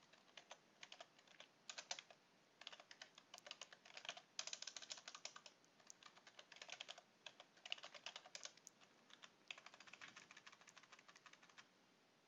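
Faint typing on a computer keyboard: quick runs of keystroke clicks with short pauses between them, as a command is typed out.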